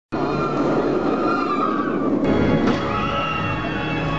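Intro music with sustained tones, changing abruptly about two seconds in.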